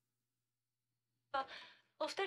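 Near silence, then one short breathy exhale like a sigh about one and a half seconds in.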